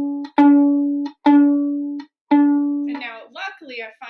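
Violin D string plucked three times, about a second apart, each note ringing and fading, while its fine tuner is turned clockwise: the string is flat, sounding as a D-flat, and is being brought up toward D.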